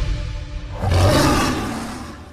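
The tail of the intro music gives way, about a second in, to a lion's roar sound effect from the news channel's logo sting, which fades out toward the end.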